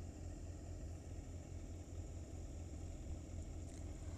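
Low, steady background hum with faint hiss, without any sudden sounds.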